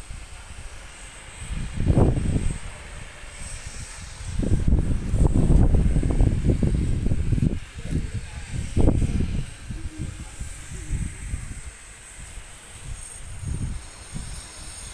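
Wind buffeting the microphone of a handheld phone: an uneven low rumble that swells in gusts, strongest through the middle.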